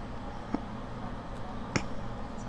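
Two faint short clicks about a second apart, over a low steady room hum.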